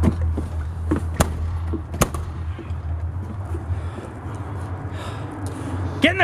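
A steady low hum with a few sharp knocks about one and two seconds in.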